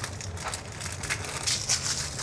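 Clear plastic bag of plastic microcentrifuge tubes crinkling and rustling as it is handled, with irregular small crackles.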